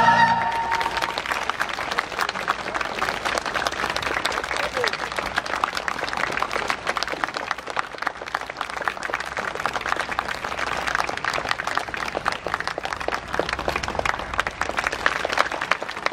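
A choir's final sung chord dies away within the first second, then an audience applauds steadily, many hands clapping together.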